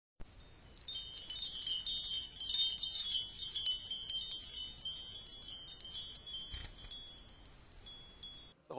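Chimes ringing in a dense shower of high, bright overlapping tones. They start just under a second in, thin out over the second half and die away near the end.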